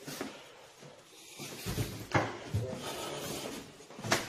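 An interior door being handled and tried: a dull knock about two seconds in, followed by softer bumps and rattles.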